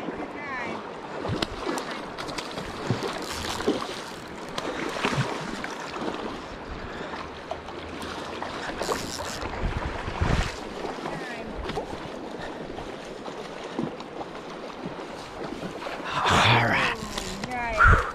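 River water lapping and splashing around a wading angler while a hooked sockeye salmon is played in, with wind on the microphone. Scattered knocks and taps run throughout, with a low thump about ten seconds in and a louder burst of splashing and noise near the end.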